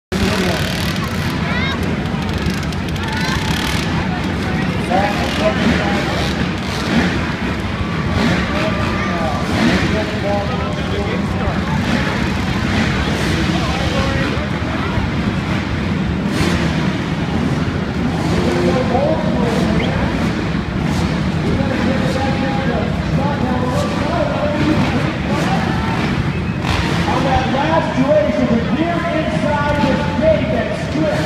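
A pack of motocross bikes idling together at the start gate, making a steady low drone, with indistinct voices from the crowd over it.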